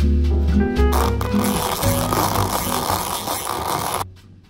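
Background music with bass notes. From about a second and a half in, a steady hiss rises over it: sparkling coffee soda fizzing as it is poured over ice into a glass. Both stop abruptly at the end.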